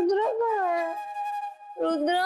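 A woman's long, wavering vocal whine without words, its pitch rising and then falling away. A second rising whine starts near the end, over a steady held note of background music.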